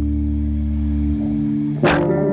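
Live band music: an electric guitar holds a sustained chord over a low bass note that drops away about a second in. Near the end a sharp hit lands and a new chord begins.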